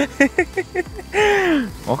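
A person talking in short syllables, then one long drawn-out exclamation whose pitch rises and falls.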